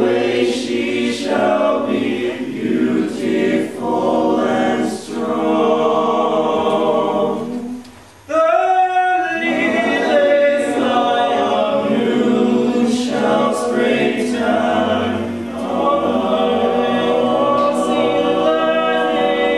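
Mixed choir of male and female voices singing a cappella, with a short pause about eight seconds in before the voices come back in.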